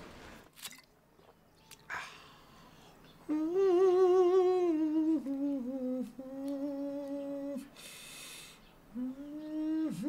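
A man humming a tune to himself in a small room, in two phrases of wavering held notes: the first starts a little over three seconds in, and the second about nine seconds in.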